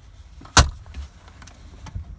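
A single sharp knock inside a truck's cab about half a second in, with a faint click near the end.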